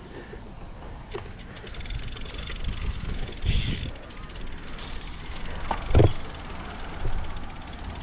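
Wind rumbling on a camera microphone during a bike ride, with a few sharp knocks from the bike or the camera mount, the loudest about six seconds in.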